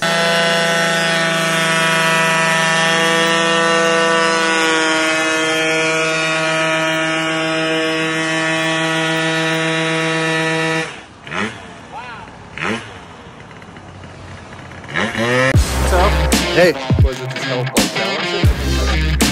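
Scooter engine held at high revs in a steady, high-pitched drone while spinning the rear tyre in a burnout; it cuts off abruptly about eleven seconds in. Near the end, music with a deep bass beat comes in.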